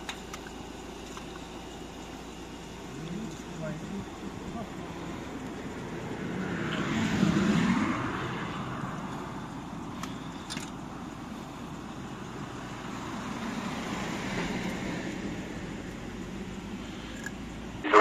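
Road traffic on a highway: a vehicle passes with a rise and fade about halfway through, and a fainter one a few seconds later, over a steady traffic hum.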